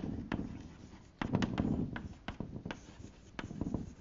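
Chalk writing on a blackboard: an irregular run of sharp taps and short scratches as words are written out.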